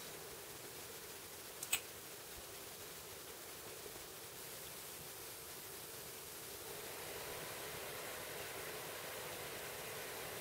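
Faint steady hiss of room noise, with a single sharp click a little under two seconds in.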